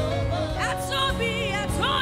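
Live gospel worship music: a woman and a man singing into microphones over a sustained instrumental backing, their sung notes wavering and gliding.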